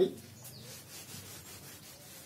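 Faint strokes of chalk rubbing on a blackboard as writing begins.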